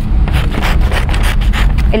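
Scissors cutting a sheet of printed paper: a quick run of short snips, several a second, over a low steady hum.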